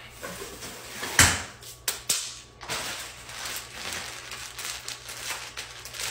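Pink tinsel artificial Christmas tree branches and a plastic bag being handled. There is a sharp knock about a second in, two lighter knocks soon after, then continuous rustling.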